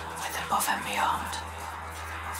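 A breathy, whispered-sounding voice over a steady low bass tone of a trance mix; the voice stops about a second and a half in, leaving the low tone.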